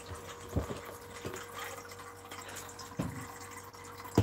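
Water running into a dog's empty water bowl as it is filled, a steady splashing rush with a few soft knocks of handling.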